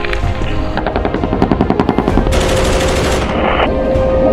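Automatic gunfire, with a rapid run of distinct shots about a second in followed by a denser rattle, over background music.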